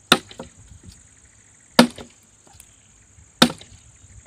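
An axe chopping into a dry wooden log: three sharp strikes about a second and a half apart, each followed by a few small knocks of loosened wood.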